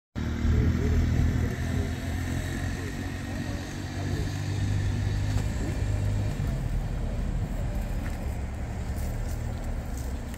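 A motor vehicle's engine running close by, a steady low hum that weakens about six seconds in.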